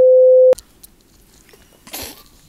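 Television test-card tone: a loud, steady single-pitched beep that cuts off abruptly about half a second in. It is followed by low room tone with a few faint clicks and a brief noise near the end.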